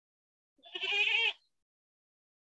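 A single short, quavering animal call, starting about half a second in and lasting under a second.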